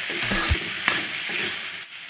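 Vegetables (drumstick pods, potato and carrot) sizzling in oil in a metal wok while a spatula stirs them, with a few sharp clicks of the spatula against the pan in the first second. The sizzle gets quieter near the end as the stirring stops.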